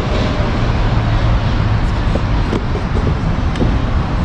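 Steady outdoor background noise with a deep rumble, like city traffic mixed with wind on the microphone, with no clear single event.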